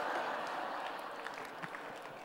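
Audience applause from a congregation, a dense patter of clapping that is loudest at first and slowly dies away.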